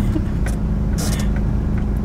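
Toyota Land Cruiser Prado KZJ78's 3.0-litre turbodiesel four-cylinder running at low speed, heard from inside the cabin as a steady low diesel drone. A couple of brief noises come about half a second and a second in.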